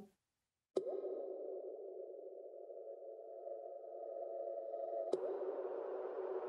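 Outro music: a sustained electronic synthesizer drone that starts with a sharp attack about a second in and holds steady. A second attack near the end adds a brighter, hissier layer.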